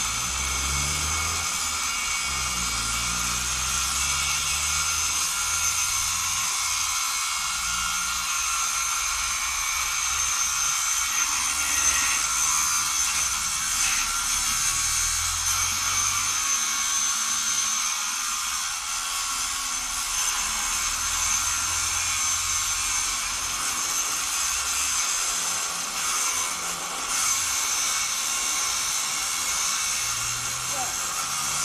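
Angle grinder cutting into a metal light pole: a steady high-pitched whine over a grinding hiss that runs without a break.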